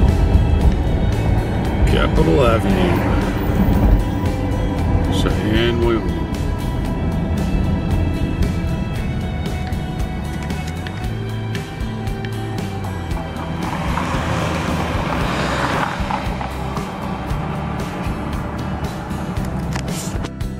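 Background music with a singing voice, over steady low road noise of a car driving.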